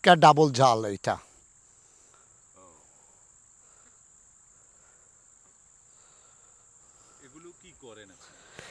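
Insects singing in a garden: a faint, steady, high-pitched drone that carries on unbroken once a man's speech ends about a second in. Faint voices come in near the end.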